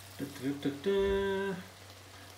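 A man's voice: a couple of short syllables, then one held, level-pitched "umm" lasting about half a second.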